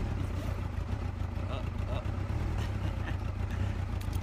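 Honda CBR600 sport bike's inline-four engine idling steadily, running again after the owner fixed it.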